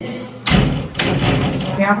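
Two dull, heavy thumps about half a second apart, followed by a man saying a brief "ya" near the end.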